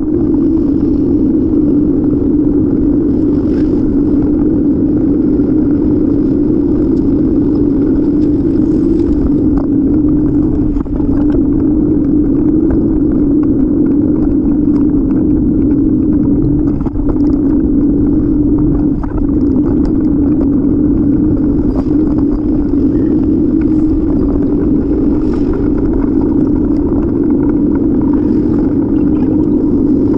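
Steady, loud rumble of wind and road noise picked up by a bicycle-mounted camera while riding, with a constant low drone and no break in it.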